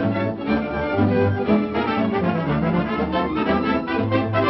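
Orchestral cartoon score led by brass, with trombone prominent, playing a tune over a steady beat.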